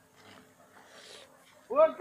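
Low background noise, then near the end a man starts a loud, drawn-out shout.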